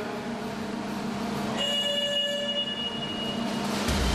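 Steady rushing water and machine hum of an indoor counter-current swimming tank, growing a little louder near the end.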